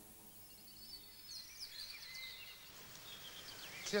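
Faint birdsong in woodland, short high chirps and whistles coming in about a second in. At the start, the tail of a low held tone fades away.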